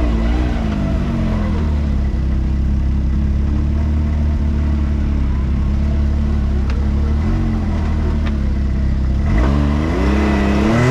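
1000cc UTV engine running under load on a rough dirt trail, heard from the cab. Its revs rise and fall about a second in, hold steady, then climb again near the end, with a couple of faint clicks.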